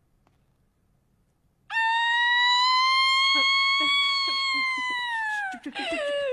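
A woman bursts into a loud, high crying wail nearly two seconds in, one long held note that rises a little and then sags, breaking into wavering sobs near the end.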